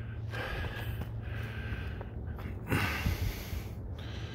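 A person breathing close to a phone's microphone in long breaths with short pauses between, with a few soft low thumps about three seconds in.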